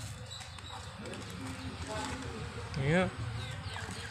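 Faint voices in the background over low ambient noise, with one short rising call about three seconds in.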